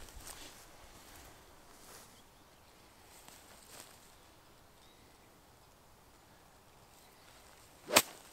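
Quiet outdoor ambience with a few faint ticks, then near the end a single sharp crack of a golf iron striking the ball cleanly out of long rough grass.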